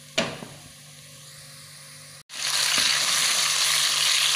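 Minced chicken and onion sizzling loudly in hot oil in a frying pan and being stirred with a wooden spatula. The loud, even sizzle starts abruptly a little past halfway. Before it there is only a faint sizzle of garlic in oil and a single sharp knock near the start.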